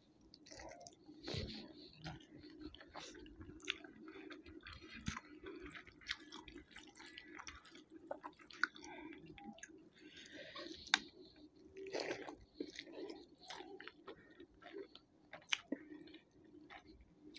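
A person chewing a handful of rice and curry close to the microphone, with many small wet mouth clicks and smacks. The squish of fingers mixing rice on a plate is also heard.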